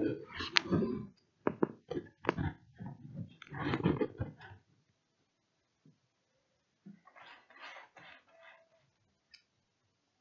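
A run of irregular small clicks and knocks, like hard plastic being handled, over the first four seconds or so. After that it is mostly quiet, with faint rustling and one tiny click near the end.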